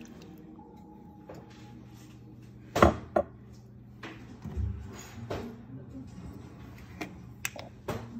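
Kitchen handling noises: two sharp knocks close together about three seconds in, then scattered lighter taps and clicks.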